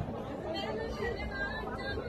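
Indistinct chatter of several people talking, with no clear words.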